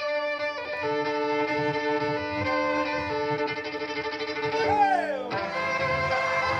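Fiddle being bowed live, holding long notes, often two strings at once. Near the end it makes a sliding fall in pitch before the bowing picks up again.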